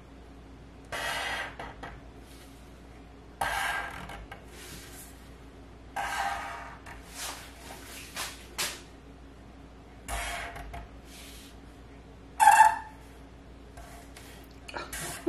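Black marker drawn across a board along a ruler in a series of short scratchy strokes, each under a second; the last stroke, near the end, is the loudest. A faint steady hum sits underneath.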